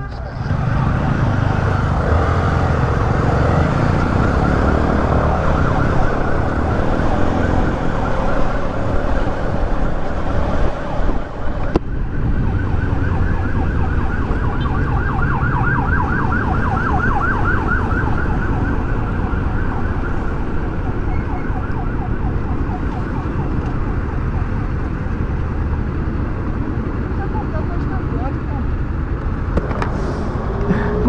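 Ambulance siren, wailing in the first half and then switching to a fast repeating yelp for several seconds, heard over the steady rumble of wind and a motorcycle engine on the move.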